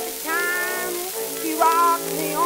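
Acoustic-era 1919 Columbia 78 rpm record of a popular song with orchestra accompaniment, playing held melodic notes with a steady hiss of surface noise over them.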